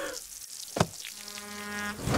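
Cartoon sound effects: a garden hose spraying with a faint hiss, a single short cough about 0.8 s in, then a steady buzzing tone from just after a second in.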